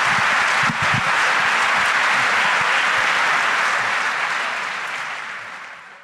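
Audience applauding steadily, then fading out over the last second or two.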